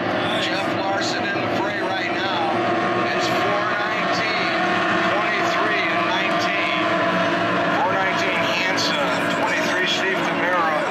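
Several SST 60 tunnel race boats' outboard engines running at racing speed out on the lake, a steady multi-tone drone, with people's voices over it.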